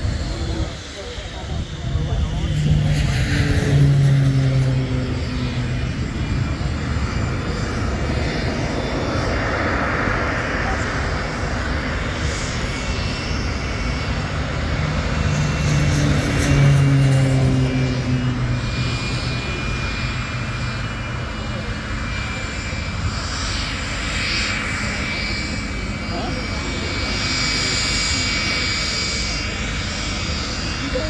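BAC 167 Strikemaster's Rolls-Royce Viper turbojet running as the jet taxis: a steady high whine over a broad engine rush, swelling louder twice.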